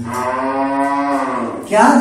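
One long held call, a single steady voice-like tone lasting about one and a half seconds, its pitch rising slightly and settling back before it stops.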